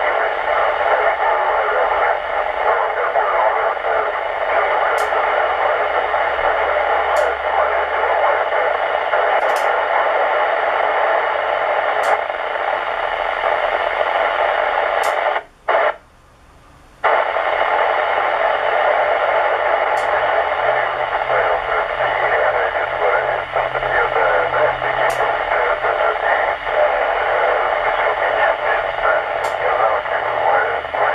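Ham radio transceiver receiving a weak, fading 2 m FM echolink signal: loud steady hiss with a faint voice buried in it, and the audio cutting out briefly twice around the middle. Faint sharp clicks come every few seconds, which the operator thinks may be the low-noise amplifier being switched on and off.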